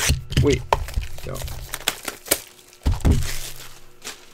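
Cardboard trading-card boxes being handled and opened by hand: a string of sharp clicks and knocks with some crinkling of packaging.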